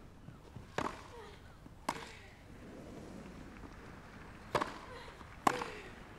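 Tennis ball struck by rackets during a rally, four sharp hits a second or more apart, with a longer gap between the second and third.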